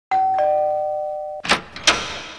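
Two-tone doorbell chime, a higher note then a lower one, ringing for about a second. Two short, sharp noises follow near the end.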